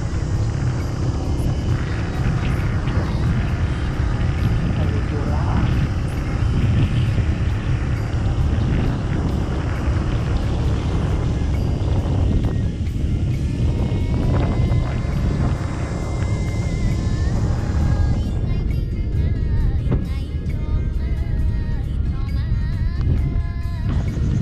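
Steady low rumble of wind on the microphone and a motorbike running along a road, with music and a singing voice heard over it.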